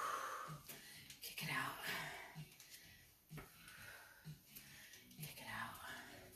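A woman's heavy, breathy exhales, about three of them, as she works through lunges with dumbbells.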